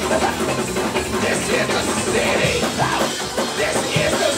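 Live church band music: drum kit and keyboard playing steadily, with wavering voice-like melodic lines over it.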